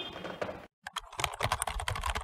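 Fingers typing quickly on an HP laptop keyboard: a rapid run of key clicks that starts about a second in, after a short gap of silence.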